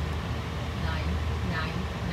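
Steady low rumble of a Boeing 737-800's jet engines passing high overhead, with a person's voice heard briefly about a second in and again near the end.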